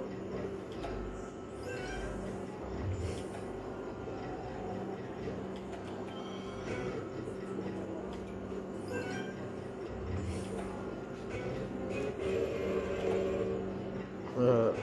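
Merkur El Torero slot machine's electronic sound effects and jingles as the reels are spun, short effects every few seconds, over a steady low hum.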